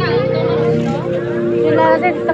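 A person's voice over a background melody of long held notes that step from one pitch to the next.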